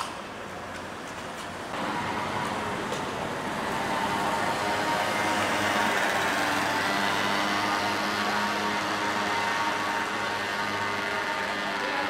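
A motor vehicle's engine running steadily, with a hum of several even tones. It starts about two seconds in, grows louder and then holds steady.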